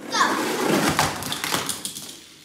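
Small die-cast toy cars rolling and rattling down a cardboard ramp, with several sharp clicks as they knock against it and the floor, fading out near the end. A child shouts "go" and laughs over it.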